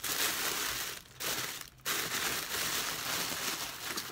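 Tissue paper being crumpled and rustled by hand, with two short pauses about a second in and just before two seconds.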